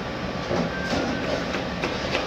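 A scalloped knife slicing bell peppers, the blade knocking on a plastic cutting board a few times, over a steady background rumble.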